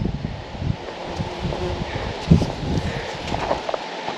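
Wind buffeting the microphone outdoors, an uneven low rumbling hiss, with a few soft thumps.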